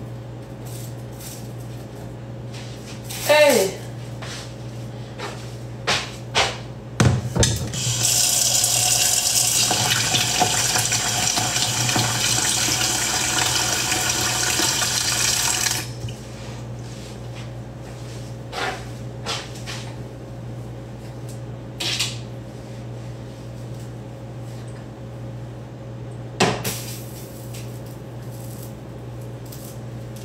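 Kitchen tap running steadily for about eight seconds, starting about eight seconds in. A short, sharply falling squeal comes near the start, and scattered clicks and knocks of kitchen things are heard over a steady low hum.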